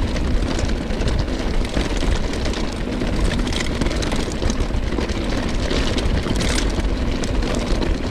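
Polygon T7 mountain bike riding over a loose gravel road: tyres crunching over stones with many small clicks and rattles from the bike, under a steady low wind rumble on the camera microphone.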